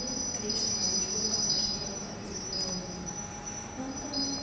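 Electronic sound of an interactive audio-visual installation: high sustained tones that switch and shift every second or so over a low wavering hum.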